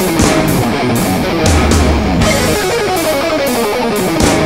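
Instrumental rock track with electric guitar playing falling runs about once a second over drums, cymbals and bass guitar.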